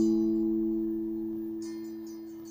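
Acoustic guitar's closing chord ringing out and slowly dying away at the end of the song.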